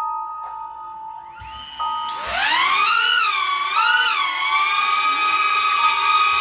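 DJI Neo mini drone's motors and guarded propellers starting with a steady whine, then spooling up about two seconds in to a loud rising whine that wavers up and down before settling at a high steady pitch. The drone is straining to lift an 80-gram payload.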